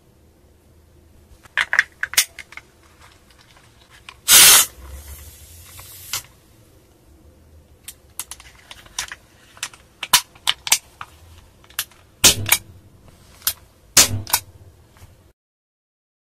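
A CO2 capsule is fitted into an air pistol's grip. A few clicks come first, then about four seconds in a short loud hiss of escaping gas, which trails off over the next two seconds. A quick run of metal and plastic clicks and two heavier knocks follow as the pistol is handled.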